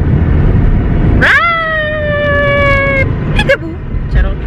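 Steady road rumble inside a moving car; about a second in, a long high-pitched mewing cry rises sharply, then sinks slowly and stops after nearly two seconds.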